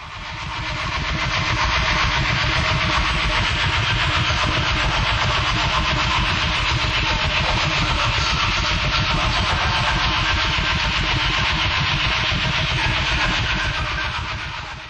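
A steady, dense rumble with a hiss over it, engine-like, fading in over the first two seconds and fading out near the end.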